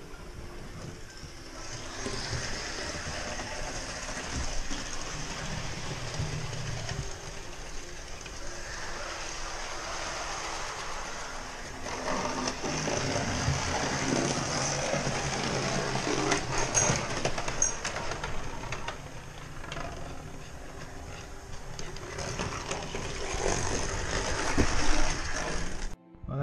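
OO gauge model steam locomotive running on the layout's track: a steady whir from its small electric motor and wheels on the rails, with light clicking over the rail joints.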